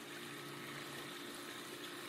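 Faint, steady water noise at a swimming pool, with a low hum underneath.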